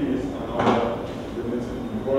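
A man speaking in a lecture hall, with a short knock about two-thirds of a second in.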